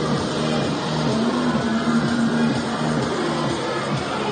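Accompaniment music for an acrobatic gymnastics pair floor routine, played over the hall's sound system, with long sustained low notes.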